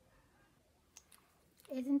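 Two short, faint clicks about a second in while liquid lipstick is being applied with its wand; otherwise quiet room tone.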